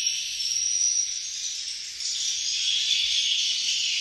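Dense, steady high-pitched twittering of swiftlet calls filling a concrete swiftlet house. Its pitch drops to a lower chatter about halfway through.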